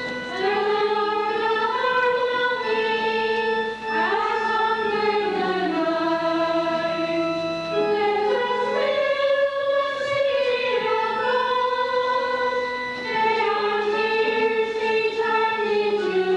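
A choir singing a hymn in slow, held notes.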